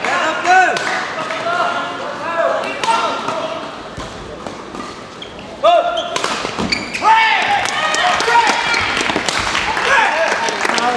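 Court shoes squeaking on a sports-hall floor as badminton players move, over and over, with sharp shuttlecock hits and voices in the hall. The squeaking thins out near the middle and grows busier again from a little past five seconds.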